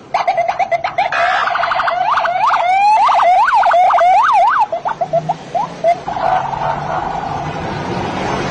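Police car siren cutting in suddenly and cycling through quick chirps, a rapid pulsing tone, and repeated rising-and-falling sweeps, then settling into a steadier tone near the end.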